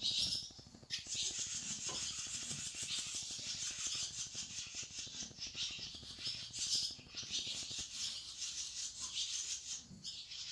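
A hand rubbing briskly over a horse's coat during a massage: a fast, even, hissing swish of palm on hair that starts sharply about a second in and keeps going.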